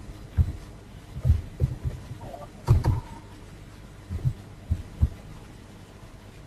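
A computer keyboard being typed on: a handful of soft, dull keystroke thumps at an uneven pace.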